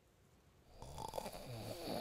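A sleeping man snoring: a short quiet pause between breaths, then a snore that starts just under a second in and grows louder to the end.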